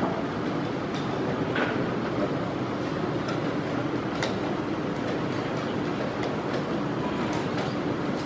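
Steady background din of a busy tournament hall, with scattered sharp clicks of wooden chess pieces being set down and chess-clock buttons being pressed, the sharpest about four seconds in as a move is made.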